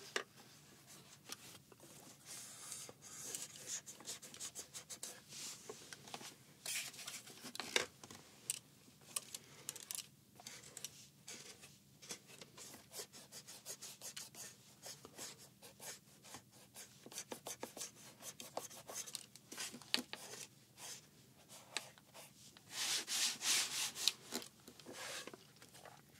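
A cloth wiping and rubbing over the body of a Panasonic HMC-152 camcorder in short, irregular scratchy strokes, working into its small parts. The rubbing gets louder for a couple of seconds near the end.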